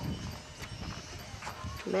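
Faint, irregular knocks over a steady low rumble of movement outdoors, a voice starting to speak at the very end.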